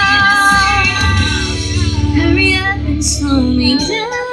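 A woman singing live into a microphone over backing music, holding long notes and moving between them, heard through the stage sound system.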